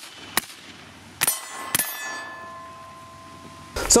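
Steel target struck by rifle fire: two sharp reports about half a second apart, then a metallic clang that rings on in several steady tones, fading over about two seconds.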